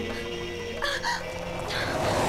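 Two short bird calls, about a second in and again near the end, over soft background music.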